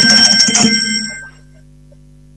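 A telephone ringing: one ring of bright electronic tones that stops about a second and a half in. It is an incoming call on the phone-in line.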